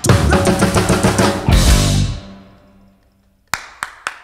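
Live band of drum kit, congas, bass and electric guitar playing the last bars of an afro-reggae tune, ending on a final hit about two seconds in that rings out and fades away. Two sharp clicks sound near the end.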